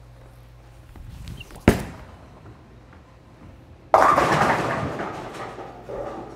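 A ten-pin bowling ball released onto the lane with a sharp thud. A little over two seconds later it hits the pins with a loud crash, and the clatter dies away over about two seconds.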